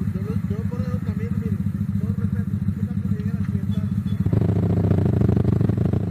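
A motorcycle engine running at low revs with a steady fast pulse, which swells louder and fuller about four seconds in as it is revved.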